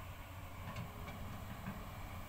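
Faint, steady low drone of a hydraulic excavator's diesel engine working on the canal dredging.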